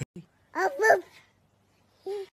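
Two quick, high-pitched bark-like calls, one right after the other, about half a second in.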